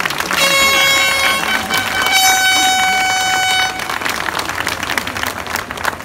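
Crowd applauding, with two long, steady horn blasts over it: a lower one near the start lasting about a second, then a higher one lasting about a second and a half.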